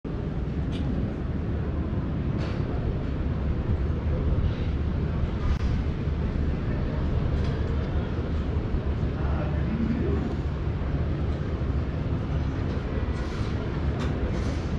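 Wind buffeting the microphone high on an open bell-tower loggia: a steady low rumble that keeps rising and falling, with faint voices of people close by.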